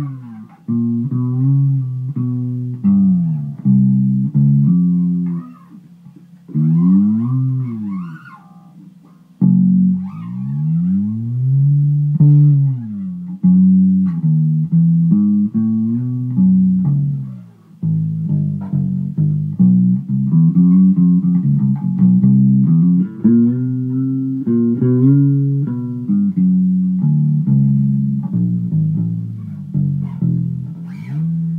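Four-string Squier Affinity Jazz Bass, converted at home to fretless, played as a run of plucked notes, with several notes slid smoothly up and back down in pitch. The playing softens for a few seconds a quarter of the way in.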